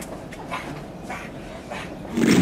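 People grunting, gasping and growling in a staged fight with zombies: a string of short breathy vocal sounds about twice a second.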